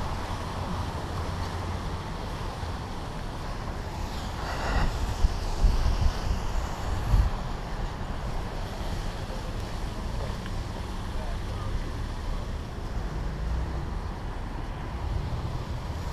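Road traffic, cars passing by, with wind buffeting the microphone as a low rumble; it swells louder about four to seven seconds in.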